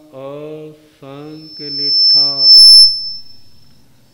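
A man chanting a mantra into a microphone, with a single high-pitched whistle of PA feedback that swells from about a second in, becomes the loudest sound just past the middle with a brief crackle, then dies away.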